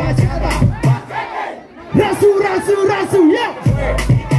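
Loud party dance music whose beat drops out about a second in. After a brief lull, a crowd of partygoers shouts together in one long held cry, and the beat comes back near the end.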